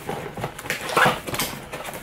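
Cardboard box flaps being pulled open and a cardboard insert slid out: irregular scraping and rustling of cardboard, with a stronger scrape about a second in.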